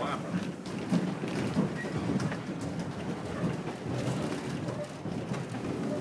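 Running noise inside a moving vintage railway carriage: a steady rumble of the coach on the track with constant small rattles and knocks.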